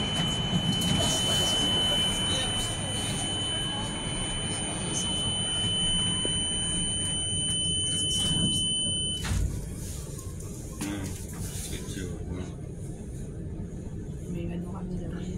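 Steady high-pitched electronic buzzer of an MEI hydraulic circular glass elevator sounding while its curved glass doors slide shut. It cuts off about nine seconds in, as a dull knock is heard when the doors meet.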